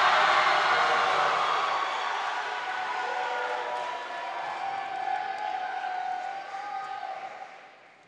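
Audience applauding, loudest at the start and gradually dying away, fading out near the end.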